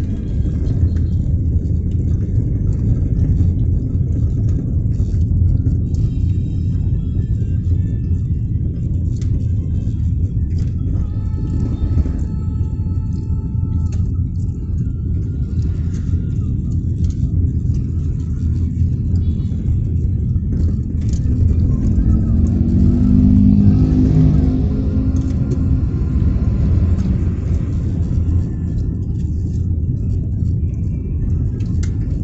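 Road noise inside a moving car: a steady low rumble of engine and tyres. Around three-quarters of the way through, the rumble grows louder with a deeper pitched engine note.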